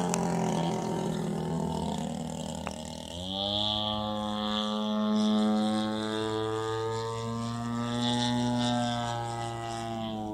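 Engine of a radio-controlled Ultimate aerobatic biplane in flight. Its drone sinks in pitch at first, then about three seconds in the throttle opens with a quick rising sweep into a steady high-revving drone.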